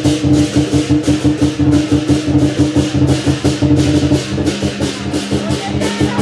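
Lion dance percussion band playing a fast, steady beat: a drum and clashing cymbals, with a ringing gong-like tone held underneath that drops slightly in pitch about halfway through.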